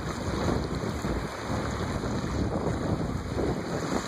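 Wind buffeting the camera microphone, a steady rumbling rush, over water splashing around the legs of someone wading through the shallows.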